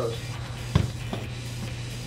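Background music with a steady low bass line, and one dull thump a little under a second in.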